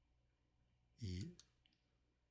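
Near silence with faint room tone, broken about a second in by a brief low hum from a man's voice, followed by a faint click.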